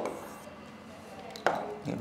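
Mostly quiet room tone, with a single sharp tap of a pen or finger on an interactive touchscreen whiteboard about one and a half seconds in.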